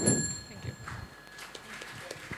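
A knock with a high metallic ring that fades out over about a second and a half, followed by faint room noise.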